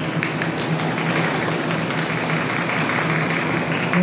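Audience applauding, many hands clapping at once, with a steady low hum underneath.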